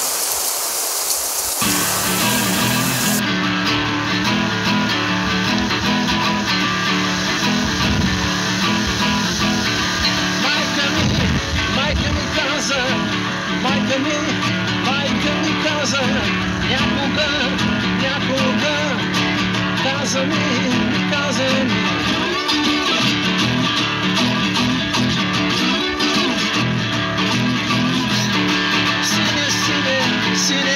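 Acoustic blues guitar music with gliding slide-guitar notes, starting about two seconds in after a brief outdoor hiss.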